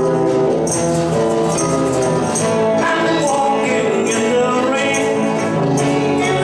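Live band playing a song, with guitars and keyboard holding chords and a tambourine jingling on the beat.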